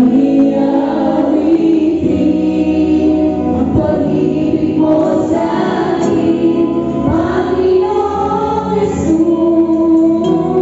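Live worship music: female vocalists singing together into microphones over a band with drum kit and bass guitar, with a few sharp drum hits.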